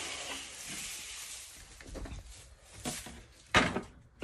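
Dry chaff rustling as it is scooped and poured into a feed container, a hiss that fades away over about two seconds, followed by a few light knocks and a short, louder rustle near the end.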